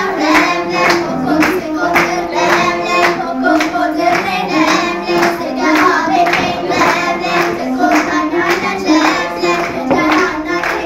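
A group of young girls singing a traditional Ethiopian New Year song together, keeping time with hand claps about twice a second.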